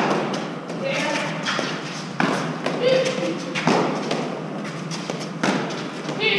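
Rally of Eton Fives: the hard fives ball is struck by gloved hands and bounces off the concrete walls and floor of the court, a sharp smack every second or two. Short calls from the players are heard between the shots.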